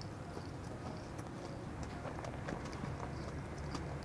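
Quiet room tone: a steady low hum with faint, scattered clicks and taps.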